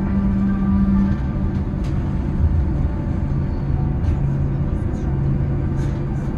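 Cabin sound of a Boeing 787-9 taxiing in: a steady low rumble from the wheels and airframe under the hum of the idling engines. A low steady tone stops about a second in and a lower one comes in later.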